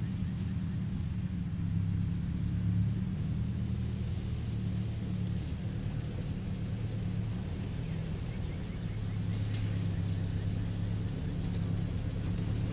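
Old Ford farm tractor's engine running steadily under work, its low note rising and falling slightly in level.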